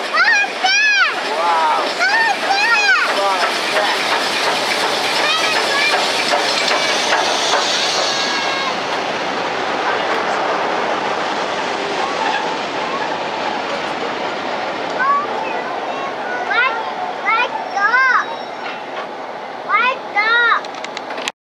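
Steam-hauled train passing through a station: LMS Jubilee-class three-cylinder 4-6-0 No. 45699 Galatea runs by at the start, then its rake of coaches rolls past with a steady rushing clatter of wheels on rail that eases a little in the second half. High calling voices rise and fall near the start and again near the end.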